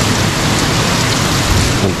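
Heavy thunderstorm rain pouring down, a loud steady rush.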